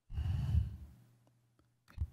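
A person's sigh: one short breathy exhale close to a microphone, lasting about half a second, followed by a faint steady low hum.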